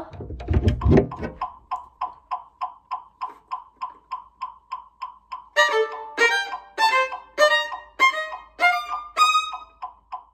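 Metronome clicking steadily at about 200 beats per minute, some three clicks a second, with a low handling rumble in the first second. About halfway through, a violin comes in over the clicks, playing a fast passage as a rhythm exercise with the note lengths reversed.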